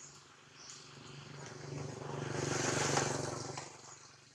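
A motor vehicle passing by: engine noise swells to a peak about three seconds in and then fades away.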